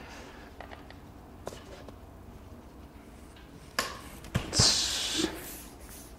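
Front wheel of a folding e-bike being fitted into its fork by hand: a few faint clicks, then a sharp click and two sharp metal knocks a little past the four-second mark, followed by a half-second scraping hiss.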